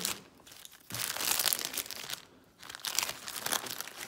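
Plastic packaging crinkling as it is handled, in two spells of about a second each with a short pause between.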